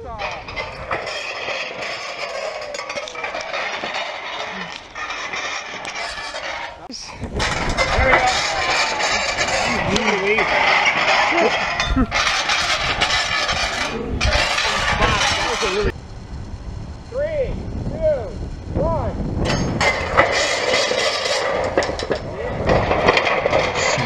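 A large counterweight trebuchet being test-fired several times outdoors: sudden low thumps as the arm fires, over long stretches of loud, noisy rumble, with people's voices between shots.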